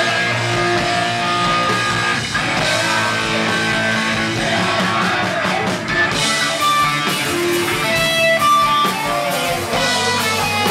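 Live rock band playing loudly, with an amplified electric guitar out front over the band and several long held notes.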